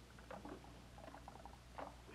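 Near silence: quiet room tone with a few faint, scattered small clicks and rustles.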